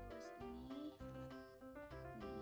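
Quiet background music: an instrumental tune of short notes at an even pace, with a few sliding pitches.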